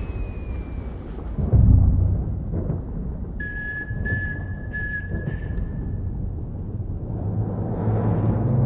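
Trailer score and sound design: a low rumbling drone with a deep boom about a second and a half in, then a single held high whistle-like tone for a couple of seconds before fading back into the rumble.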